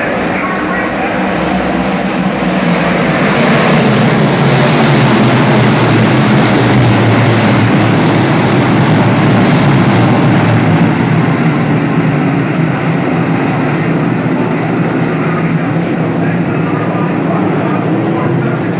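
A field of DIRT Big Block Modified race cars with big-block V8 engines racing at speed, a dense, unbroken wall of engine noise. It builds to its loudest about four seconds in as the pack comes round and eases off a little in the last few seconds.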